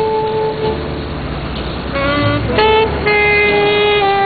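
Alto saxophone playing a slow jazz ballad: a long held note ends under a second in, and after a pause of about a second a short run of notes follows, settling into another held note. A low rumble of street traffic fills the pause.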